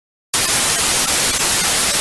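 TV static sound effect: a loud, even white-noise hiss that starts abruptly about a third of a second in, after dead silence.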